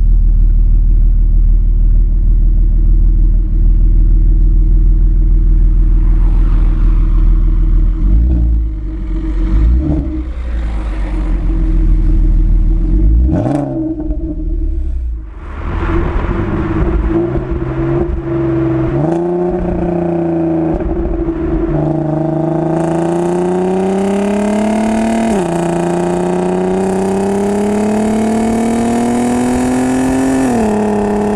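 Exhaust of an Audi A3 3.2's VR6 engine through an RS3 exhaust. It idles with a few short revs, then the car pulls away and accelerates hard through the gears: the note climbs steadily and drops sharply at each upshift, several times over.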